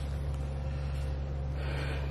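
A steady low hum in a room, with a faint brief hiss near the end.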